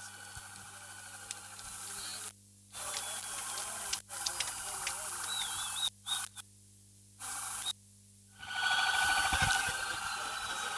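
Faint, indistinct voices in the distance over a steady hiss, with the sound cutting out completely several times.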